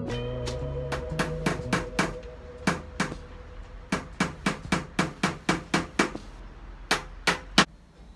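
Steel claw hammer driving nails into a wooden stand base: runs of quick strikes, several a second, with short pauses between the runs. Three harder blows come near the end.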